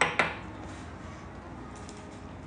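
Two quick knocks, a fifth of a second apart, of a drinking glass set down on a granite countertop.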